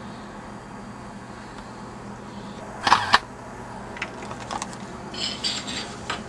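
Two sharp clicks close together about three seconds in, then a scatter of lighter clicks and taps, over a steady low hum.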